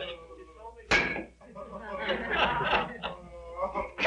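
A single sharp slapstick smack about a second in, with wordless vocal sounds from the men before and after it.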